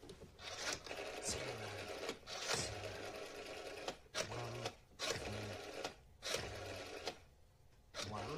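Rotary telephone dial being turned and whirring back, several digits in a row, with short pauses between them, while an international call is dialled.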